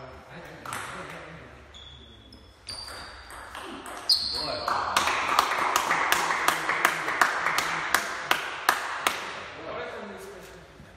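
Table tennis rally: the celluloid ball is clicked back and forth between paddles and table about three times a second for several seconds, then stops. Before it, a few scattered taps and short high squeaks.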